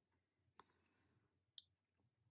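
Near silence with two faint, short clicks about a second apart, the second a tiny high ping: glass seed beads and crystals knocking together as they are handled on a beading needle and thread.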